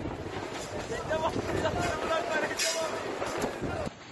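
Strong lodos storm wind blowing over the microphone and shaking market-stall awnings, a steady noisy rush without a break.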